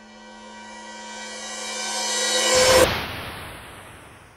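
Network logo sting: a sustained synthesized chord swelling steadily louder. About two and a half seconds in, it breaks into a noisy whoosh that peaks and then fades away.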